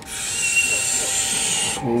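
Sci-fi sound effect from an animated cartoon soundtrack: a steady high hiss with a short whistling tone about half a second in, cutting off sharply near the end.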